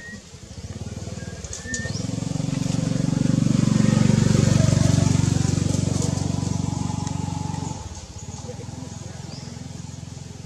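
A motor engine running close by, with a steady pitch and rapid pulsing. It grows louder to a peak around the middle and drops away sharply about eight seconds in. A few faint high chirps sound above it.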